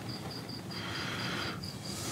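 Crickets chirping in an even pulsing rhythm, about five chirps a second, with a soft hiss swelling briefly in the middle.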